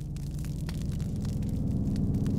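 A snow tussock burning: fire crackling over a low, steady rumble, growing louder.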